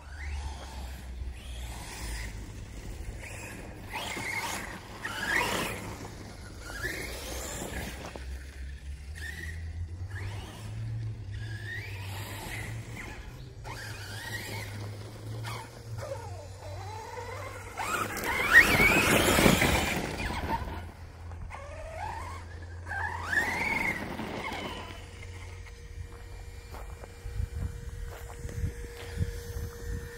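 Brushless electric RC monster truck (Spektrum Firma 4074 2050Kv motor on 6S) being driven in bursts: a string of short whines rising and falling in pitch every second or two as the throttle is blipped. About 18 seconds in comes the loudest moment, a rough two-second burst of noise.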